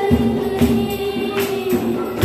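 Two girls singing a Tamil Christian worship song in unison into microphones, over backing music with a steady beat about twice a second.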